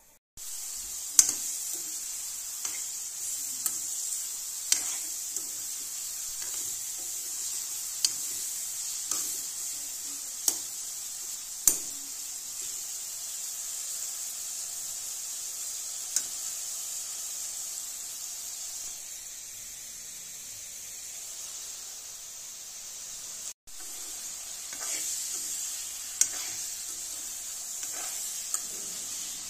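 Pork pieces sizzling as they fry in an iron wok, a steady hiss, with a metal spoon stirring and clinking sharply against the pan every few seconds.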